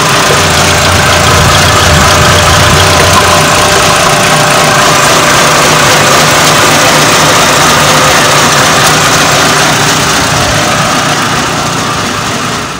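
Four-cylinder petrol engine with an LPG conversion running steadily, heard close up in the engine bay with the oil filler cap being opened for a blow-by check. A low hum in its sound drops away about three and a half seconds in.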